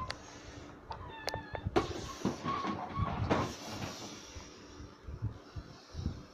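Plastic clattering and knocks from a toy dump truck being grabbed and pushed across a carpeted floor, the loudest knock a little under two seconds in. There are a few short high-pitched squeaks in the first half.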